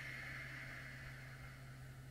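Faint, long breath out that fades over about two seconds, over a steady low hum.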